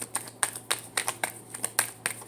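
A tarot deck being shuffled by hand: a quick, irregular run of about a dozen sharp card clicks and snaps.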